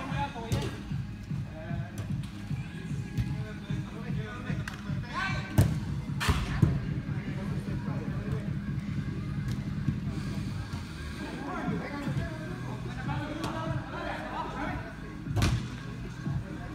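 Music with a steady bass pulse playing through a sports hall, with a few sharp thuds of a soccer ball being struck, the loudest about five and a half and six and a half seconds in and again near the end, over players' distant voices.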